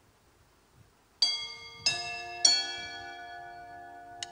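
Three bell-like chime notes struck about two-thirds of a second apart, each ringing on and overlapping the next, after about a second of near silence.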